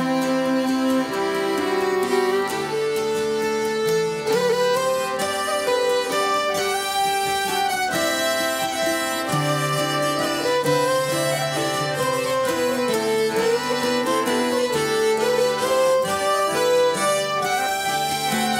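Irish traditional instrumental break: fiddle carrying the tune, joined by harmonica, over plucked-string backing, playing on without a pause.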